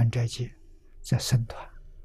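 An elderly man speaking Mandarin in short phrases, with pauses between them.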